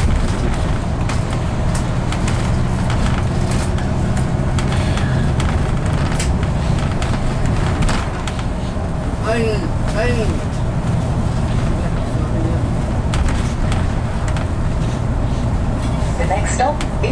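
Inside a moving bus: the engine's steady low drone and road noise, with frequent light rattles and clicks from the bodywork and fittings.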